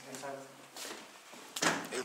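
Indistinct talking in a small room, with a short sharp knock about three-quarters of the way through.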